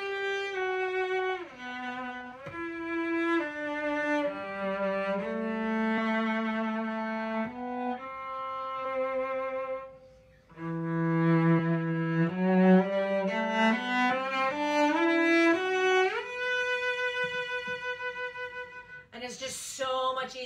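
Cello bowed in a slow melody of held notes stepping up and down, with a brief break about halfway through. It ends on a long held note with vibrato.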